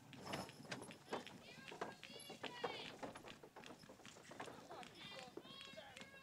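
Horse-drawn wagon moving slowly through dry corn stubble, faint: scattered knocks and rustles. Faint voices in the background.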